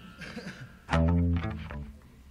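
The tail of the music dies away, then about a second in a single plucked guitar note or chord is struck, rings briefly and fades out.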